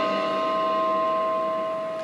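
The final chord of a percussion ensemble rings on as a few steady held pitches, slowly fading away.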